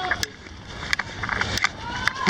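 Running footfalls on asphalt, sharp taps roughly every two-thirds of a second, over a steady rushing noise from moving with the camera. Short bits of voices are heard near the start and end.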